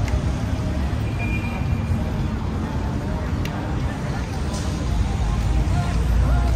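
Urban outdoor ambience: a steady low rumble of road traffic with people chatting nearby, the rumble growing louder near the end.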